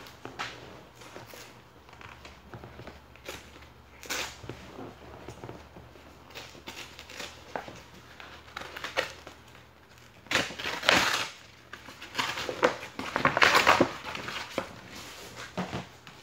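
A package being handled and opened by hand: irregular crinkling and rustling of paper and plastic wrapping, loudest about ten and thirteen seconds in.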